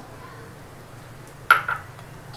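A single sharp clink of kitchen cookware about one and a half seconds in, ringing briefly, over a faint steady hiss.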